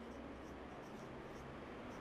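Felt-tip marker writing on a whiteboard: a run of faint, short strokes as a word is written.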